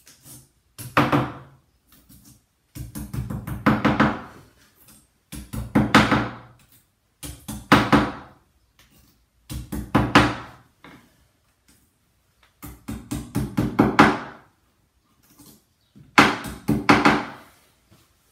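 Hammer tapping 6 mm plastic wall plugs into drilled holes in a wall: about seven bursts of quick taps, one every two seconds or so, each burst building up to harder blows.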